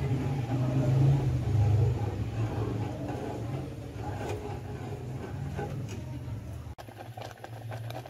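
Steady low mechanical hum, with a metal spoon scraping and stirring milk and vermicelli in an aluminium pot. The hum drops off sharply near the end, leaving quieter ticking and popping from the simmering pot.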